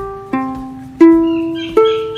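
Ukulele open strings plucked one at a time in standard GCEA tuning: the G still ringing, then C, E and A, each a single note higher than the last that rings out and fades.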